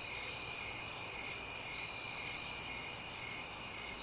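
Steady, continuous chirring of crickets, a night-time ambience effect.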